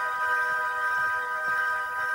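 Background music from a cartoon soundtrack: a single chord of several steady tones, held unchanged.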